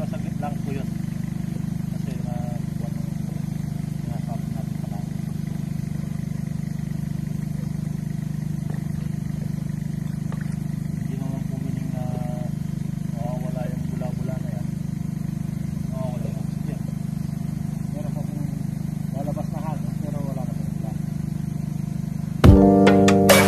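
Steady, unbroken low motor hum, the aeration blower that keeps air bubbling through a biofloc fish tank. Faint voices come through every few seconds.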